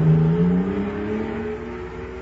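Old-time radio sound effect of a futuristic jet car taking off on super fuel: a motor-like drone rising steadily in pitch and fading as it goes.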